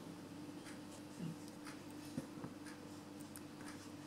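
Quiet room tone: a steady low hum with a few faint clicks and rustles, about a second in and twice a little after two seconds in.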